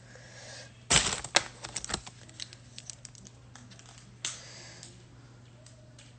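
Rustling and light clicking from hair being gathered and put up by hand, with a dense burst of clicks about a second in, then scattered clicks and a brief swish.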